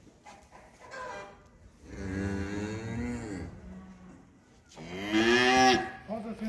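A young bull, about sixteen months old, mooing twice: a long low call about two seconds in and a louder, shorter one about five seconds in.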